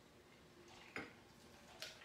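Near silence with room tone, broken by two faint short clicks, about a second in and again near the end.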